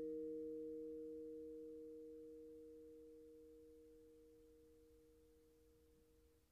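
Vibraphone chord left to ring, a few steady pitches fading slowly and evenly to almost nothing.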